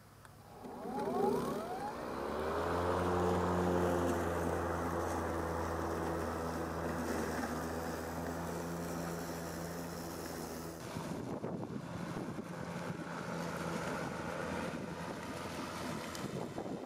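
SKIL 40V brushless cordless lawn mower starting up, its motor and blade spinning up with a rising whine about a second in, then running with a steady hum as it is pushed across grass. About eleven seconds in the sound drops to a quieter, rougher running.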